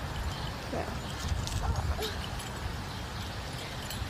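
Outdoor background noise, a low steady rumble with a few faint brief sounds, after a woman's short "yeah" early on.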